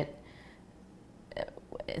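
A pause in a woman's speech: quiet room tone with a faint breath, then short vocal and mouth sounds in the last half second as she starts to speak again.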